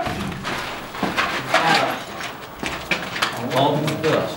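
Shuffling footsteps and scattered knocks on a gritty concrete floor, with low voices in the room.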